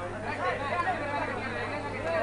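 Overlapping voices of spectators and players talking and calling out, with a steady low hum underneath.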